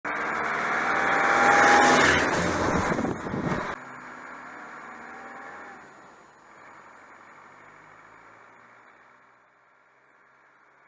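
Land Rover Defender driving past on a gravel road: it grows louder to a peak about two seconds in, then cuts off abruptly just before four seconds. A much fainter, muffled engine sound follows and fades away.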